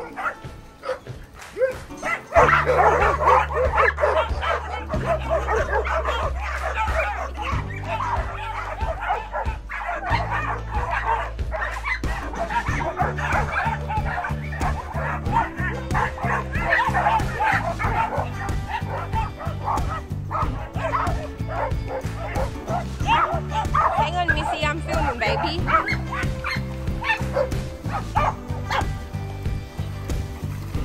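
A pack of dogs barking and yipping over background music. The music has a steady bass line that comes in about two seconds in.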